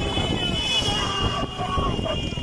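Roadside crowd shouting and calling out, over a motorcycle engine running, with a steady high-pitched tone that fades out near the end.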